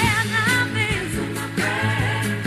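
Pop song playing: a lead singer's voice, with some vibrato, over a steady beat and bass line.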